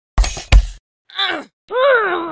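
Two quick knocks, then a short high vocal whimper and a longer cartoon-like groan that rises and then falls in pitch near the end.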